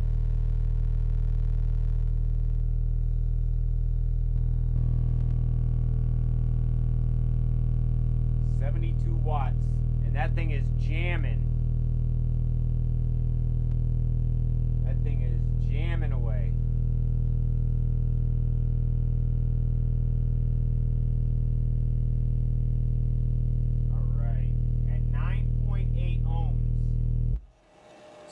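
Kicker Comp C 12-inch subwoofer (44CWCD124) in a sealed box playing a steady 40 Hz test tone on a JBL GTX-500 amplifier. The tone steps up in level about four and a half seconds in and cuts off suddenly just before the end.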